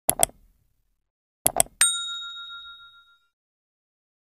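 Two quick mouse-click sound effects, a second pair about a second and a half later, then a notification-bell ding that rings out and fades over about a second and a half.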